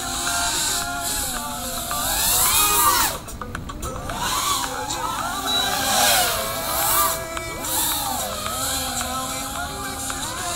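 A 5-inch FPV freestyle quadcopter's brushless motors and Gemfan 5136 props whining, the pitch rising and falling with throttle changes. About three seconds in the throttle briefly cuts and the sound drops before spinning back up.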